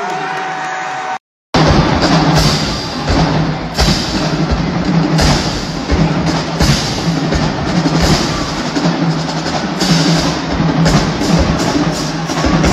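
A marching band's drumline playing a steady, driving cadence of snare and bass drums over a sustained low band tone, recorded on a phone. About a second in the sound cuts out briefly as one band clip gives way to the next.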